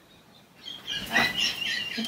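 A man laughing in high, squeaky, wheezing squeals that start about half a second in and come in short broken pieces.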